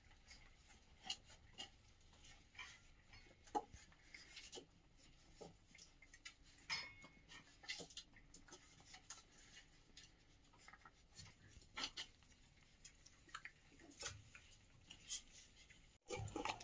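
Near silence, broken by faint, irregular small clicks and ticks every second or so.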